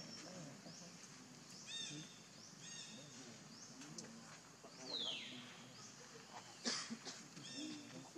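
Faint animal calls: repeated short, high, arching chirps, then a falling squeal about five seconds in and a sharp click near the end.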